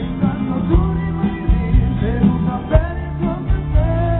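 Live pop-rock band playing with a steady drum beat, bass and guitar, and a male lead singer's voice carried over it.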